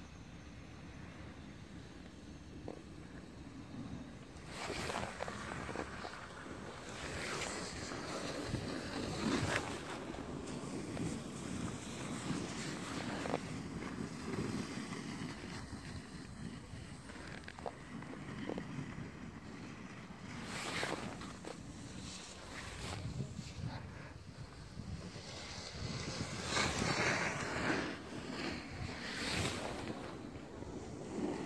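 Wind buffeting the microphone over a snowboard sliding and scraping on packed snow during a downhill run: a steady rush with several louder scrapes, each lasting a second or two.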